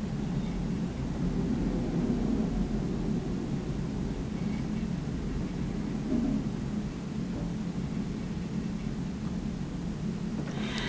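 Steady low background rumble with a faint hiss, unchanging throughout.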